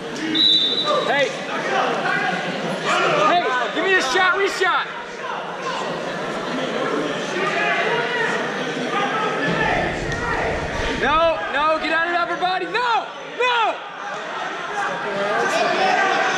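Voices of coaches and spectators shouting and talking in a large, echoing gym during a wrestling bout. About two thirds of the way in comes a run of short squeaks.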